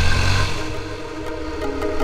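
Motorcycle engine running low, fading out about half a second in as background music with held tones comes in.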